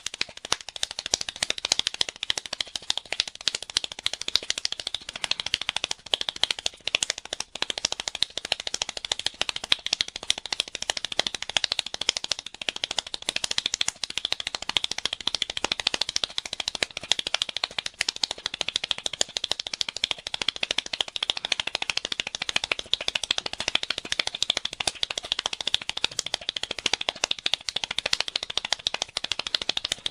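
One person's hand clapping at top speed, a rapid, even stream of about thirteen sharp claps a second that keeps up the same pace throughout.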